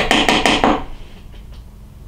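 Fly-tying hair stacker being tapped on the tying bench to even the tips of a bundle of deer hair: a quick, even run of sharp knocks, about six or seven a second, that stops just under a second in.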